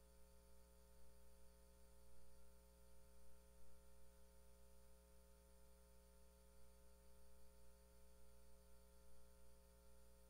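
Near silence: a faint, steady electrical hum with a low hiss, and no other sound.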